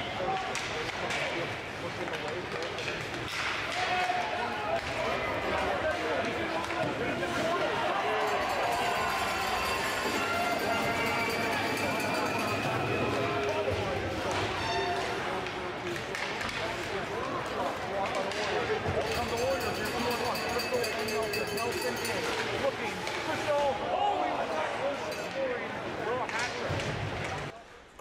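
Ice hockey arena game sound: a steady mix of voices from the crowd and players, with scattered knocks of sticks and puck.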